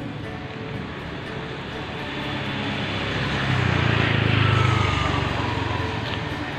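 A motor scooter passing close by, its engine getting louder to a peak about four to five seconds in, with a falling whine as it goes past, then easing off.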